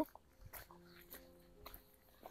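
Faint footsteps on a cobblestone yard, a few soft scuffing ticks about half a second apart, over a faint steady low hum.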